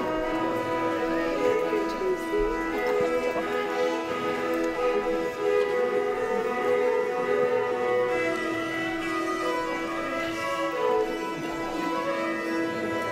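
Two fiddles playing a tune together, with steady held drone notes under the moving melody.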